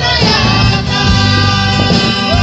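Torres Strait Islander choir singing a traditional island hymn together in harmony.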